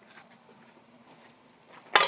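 Low, faint handling noise with a few small ticks, then one sharp clack near the end as the slicer's metal blade cover or parts are handled.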